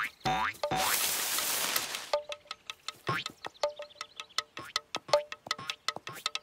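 Drumsticks striking a small drum in a sparse, uneven beat, each stroke sharp with a short ringing tone. The strikes start about two seconds in, after a burst of hissing noise like a cymbal crash.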